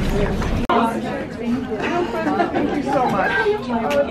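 Indistinct chatter of several people talking at once in a room, after a low rumble that cuts off suddenly under a second in.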